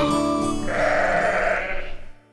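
A sheep's bleat lasting about a second, starting about half a second in, over the held final chord of a children's song, which then fades out near the end.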